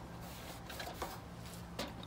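Cloth rag rubbing over a painted sheet-metal dash panel in a few faint wiping strokes, taking off paint that ran from coats laid on too heavy. A faint steady low hum runs underneath.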